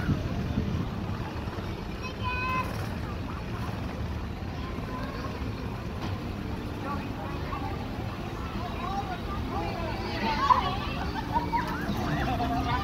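Parade vehicles rolling slowly past with a steady low engine rumble, under scattered voices of onlookers.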